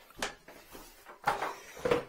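About three short knocks and clatters of handling, as a plastic toilet seat lid and a red drain-cleaning machine are moved about.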